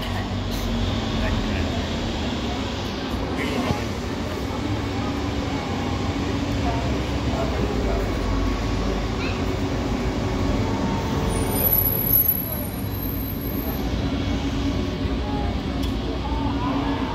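Steady low hum of an articulated electric trolleybus standing nearby in street traffic, with a high thin electric whine for a couple of seconds about three quarters of the way in.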